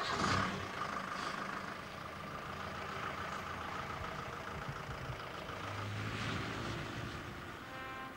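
Ford Transit van's engine running steadily as the van drives off, a little louder in the first half-second.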